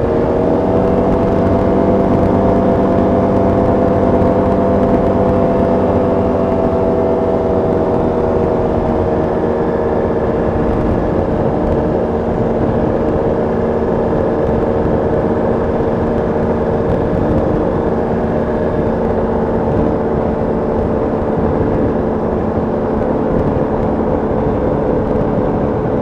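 Motorized hang glider trike's engine and propeller at high power, pitch rising in the first second as the throttle is opened, then holding steady through the climb with a slight easing a few seconds later.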